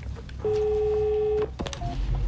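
Telephone ring tone on the line: one steady ring lasting about a second, followed by a click and a short beep near the end.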